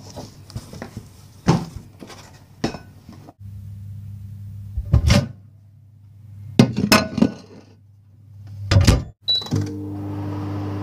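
A plate and a microwave oven being handled: a string of thunks and clatters as the plate goes in and the door is worked, then a short high keypad beep near the end and the microwave starting up with a steady hum.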